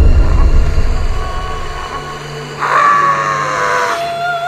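Horror-trailer sound design: a sudden deep boom that opens into a low rumble, then about two and a half seconds in a loud, high shriek that slides slightly down in pitch.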